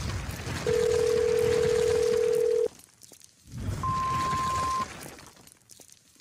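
Telephone tones: a steady low tone for about two seconds, then after a short gap a higher steady beep about a second long, each over a background hiss.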